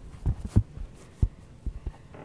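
Handling noise from a phone being gripped and moved about: several dull, low thumps and bumps against its microphone, spread unevenly.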